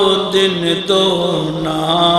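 A man chanting an Islamic devotional piece in long, slowly gliding held notes, with brief breaths between phrases. A steady faint high-pitched tone runs underneath.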